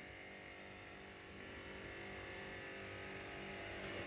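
Faint steady background hum and hiss with no distinct event, growing slightly louder after about a second and a half.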